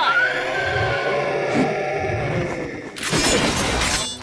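Sound effects from an animated action episode's soundtrack: a long held pitched cry that slides slowly down, then a loud crashing, shattering sound about three seconds in.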